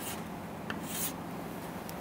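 Chalk writing on a chalkboard: a few short, faint chalk strokes as a word is written and underlined.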